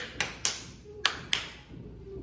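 Sharp hand snaps made close beside a girl's ear, five in an uneven row, as a test of whether she can hear.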